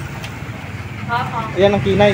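A person's voice speaking from about a second in, over a steady low background rumble.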